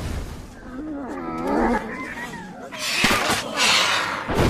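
Pterosaur creature calls from an animated film's soundtrack: a wavering, up-and-down pitched cry in the first half, then a louder, harsher screech near the end.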